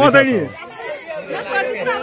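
Speech only: people in a watching crowd talking over one another, with a man's voice loudest at the start.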